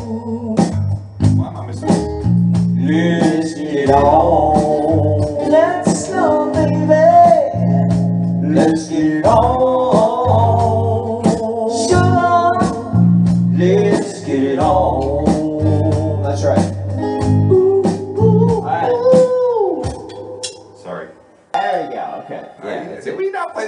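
Live band rehearsing a soul tune in the key of D: sung vocals over bass guitar, electric guitar and drums, the song winding down to its ending about two seconds before the end.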